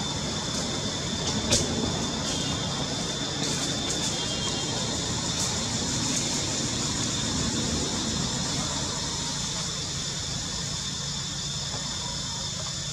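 Steady outdoor background noise: a continuous high-pitched buzz over a low rumble, with a sharp click about a second and a half in and a few faint ticks after it.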